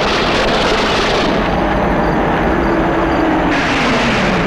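Car engine and tyre noise from a small hatchback driving toward the listener, loud and steady, with a tone that falls in pitch in the second half.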